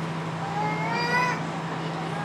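A single high-pitched call, about a second long, rising slightly in pitch, over a steady low hum.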